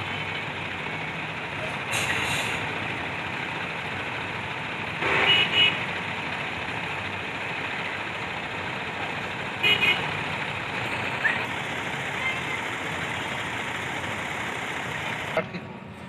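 Steady noise of vehicle engines running in a bus yard, broken by two short double horn toots, about five and ten seconds in.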